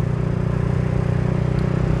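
Suzuki Thunder 125's single-cylinder four-stroke engine running steadily as the motorcycle cruises, heard as an even low drone from the rider's seat.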